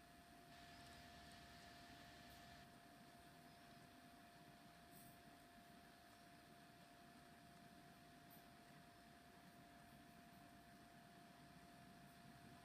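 Near silence: room tone with a faint, steady, thin hum.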